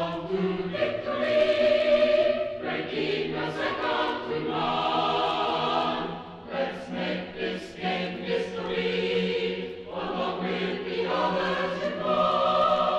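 Choir singing as background music, in long held chords with short breaks between phrases.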